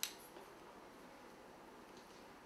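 A single sharp metallic click as a curling iron's clamp snaps, followed by a faint tick about half a second later, over quiet room tone.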